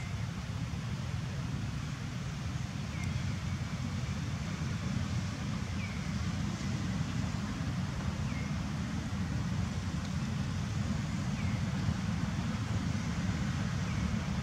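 Steady low outdoor rumble with a faint short chirp about every three seconds.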